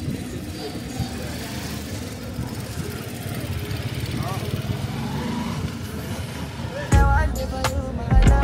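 Street traffic ambience: motor vehicles, including a motor tricycle, passing on a town road under a steady hum, with faint voices. About seven seconds in, loud music with strong bass cuts in abruptly.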